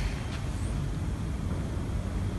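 A steady low rumble of background noise, with a faint tick about a third of a second in.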